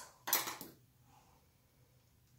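A short clatter about a third of a second in, a plastic paint container being set down on the cluttered work table.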